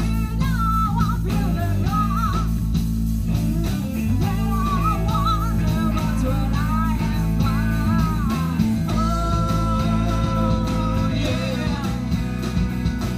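Live rock band playing, with electric guitars, bass guitar and drum kit. A wavering lead melody runs over the band and settles into one long held note about nine seconds in.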